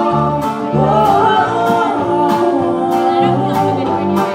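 Live folk-bluegrass band playing a song: women singing in harmony over acoustic guitar, mandolin and upright bass, with a steady drum beat.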